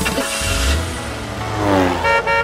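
Instrumental music between verses of a children's song, with a whooshing vehicle sound effect and a low rumble as a cartoon bus drives off. A sliding tone comes near the end.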